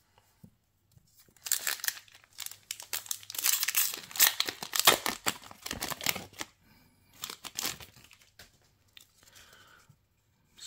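Foil Yu-Gi-Oh booster pack wrapper crinkling and tearing as it is opened, starting about a second and a half in and busiest in the middle, then trailing off into a few light rustles as the cards are slid out.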